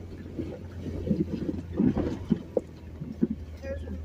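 2014 Jeep Wrangler Unlimited's 3.6-litre V6 running low and steady as it crawls up a rutted hill. Scattered knocks and thumps from the Jeep and its tyres on the rough ground fall through the middle of it.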